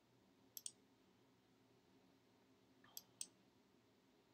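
Two pairs of faint computer mouse clicks, the first about half a second in and the second about three seconds in, each a quick press and release, over near-silent room tone.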